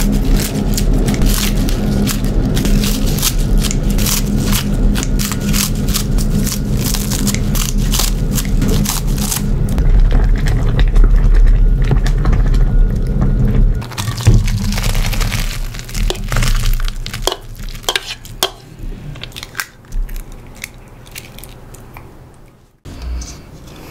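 Kitchen scissors snipping bok choy into a pot, a quick run of crisp crunching cuts over the low steady rumble of a boiling electric pot. The rumble stops about 14 seconds in, and the snips and clicks thin out to a few scattered ones toward the end.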